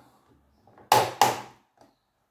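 Plastic hinge of a tabletop LED makeup mirror clicking through its detent positions as the panel is tilted back: two sharp clicks about a second in, a third of a second apart, with a few fainter ones around them.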